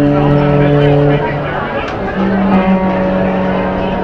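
Two long held notes from a garage-punk band's amplified instruments over a rough, noisy background: a lower note for about a second and a half, then a slightly higher one from about two seconds in.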